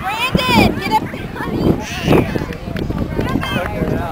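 Shouted voices of players and spectators across a soccer field, with wind rumble and handling knocks on the camera microphone.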